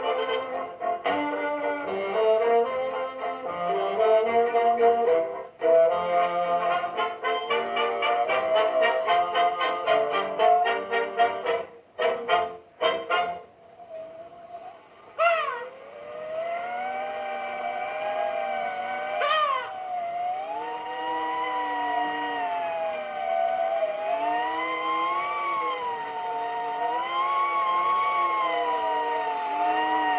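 Brass-led orchestral cartoon title music, which breaks off around 13 s. It is followed by a long, slowly wavering, gliding tone with sharp swooping cries at about 15 and 19 s: cartoon seagulls cawing.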